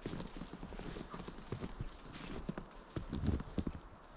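Footsteps of a person walking in snow: an uneven run of soft thumps, loudest a little after three seconds in.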